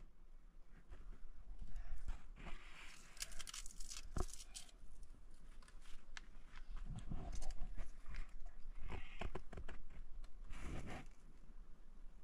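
Dry twigs and leaves crunching and snapping as they are handled to light a small kindling fire with matches: irregular bursts of sharp clicks and short scrapes.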